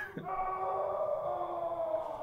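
A tense musical drone from the film's score: several held tones that sink slightly in pitch.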